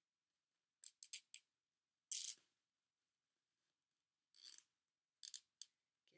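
A nylon zip tie being pulled tight through its ratchet lock in short zipping pulls: a quick run of three or four about a second in, a longer one at about two seconds, and a few more short pulls near the end.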